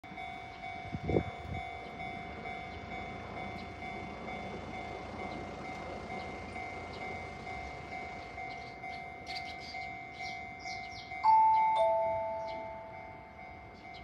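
Electronic level-crossing warning bell ringing steadily, with a thump about a second in. Near the end, a two-note falling station chime sounds, announcing an approaching train.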